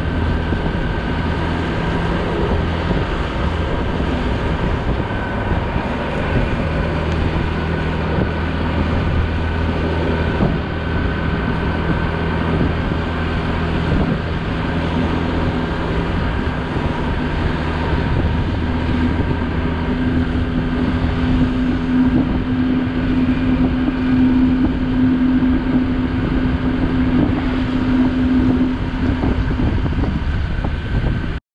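Motorcycle engine running at a steady road speed, with wind noise on the microphone. Its note shifts to a higher steady pitch about two-thirds of the way in.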